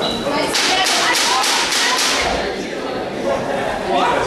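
About six sharp slaps in quick, even succession, roughly four a second, lasting about a second and a half, over voices in a large hall.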